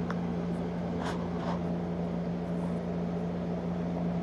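Steady low electrical hum of running reef-aquarium equipment such as pumps, over a faint even hiss, with a few faint ticks in the first second or so.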